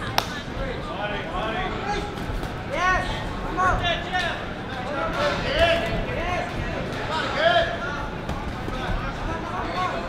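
Boxing gloves landing punches in sharp slaps, one loud hit just after the start, under short shouted calls from people around the ring.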